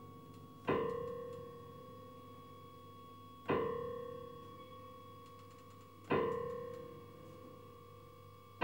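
Grand piano: a single note struck three times, about every two and a half seconds, each left to ring and fade away.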